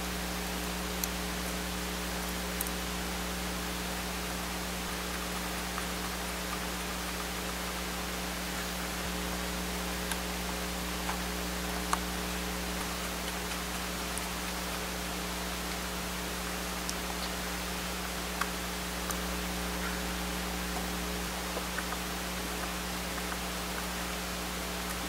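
Steady hiss with an electrical hum, and a few faint, scattered clicks of a small screwdriver fitting screws into a laptop's board.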